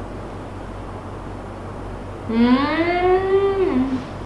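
A woman's long, appreciative 'mmm' as she tastes from a spoon, starting about two seconds in. Her hum rises in pitch, holds and drops at the end, after a steady low room hum.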